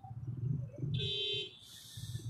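Low murmur of voices in the background, with a brief buzzy tone lasting about half a second about a second in, followed by a short hiss.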